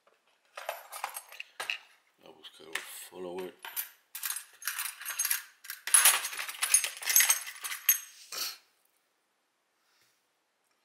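Small metal parts of a brass lock cylinder clinking and rattling in the hands as it is taken apart: a run of light irregular clicks and jingles that gets busier and louder from about four seconds in and stops suddenly at about eight and a half seconds.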